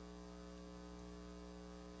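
Faint, steady electrical mains hum with a stack of evenly spaced overtones, the background of the recording between speakers.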